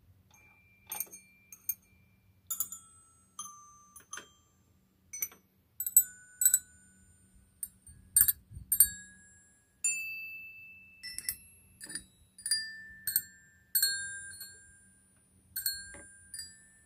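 Mr. Christmas Santa's Musical Toy Chest playing a Christmas tune, its mallet-holding figures striking small metal bells one note at a time. Each bright note rings and fades before the next, in a slow, uneven melody.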